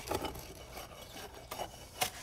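A steel bar and a shovel working wet ready-mix concrete into a post hole around a vinyl fence post, making soft, irregular scraping and rubbing strokes. The bar is poking through the concrete so it settles evenly around the post.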